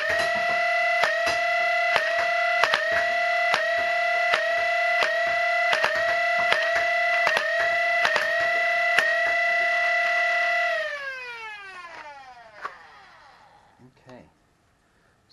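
Lepus Mk1 3D-printed Nerf blaster's flywheel motors whining steadily while darts are fired singly and in short bursts: about fifteen sharp shots, each giving a brief dip in the whine. Near the end the motors are let go and wind down, the whine falling in pitch and fading over about two seconds.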